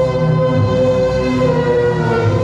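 Electronic dance music from a DJ set: a held, siren-like synthesizer drone over a lower line of changing bass notes.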